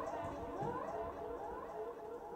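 Electronic sound score made from recorded voices that have been algorithmically altered: several layered pitched tones gliding upward again and again, overlapping one another.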